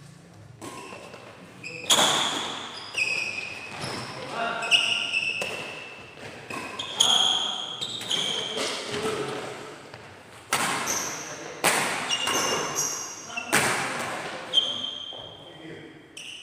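A badminton doubles rally: about a dozen sharp racket strikes on the shuttlecock, echoing in a large hall, mixed with short high squeaks of shoes on the court floor. The hitting stops shortly before the end.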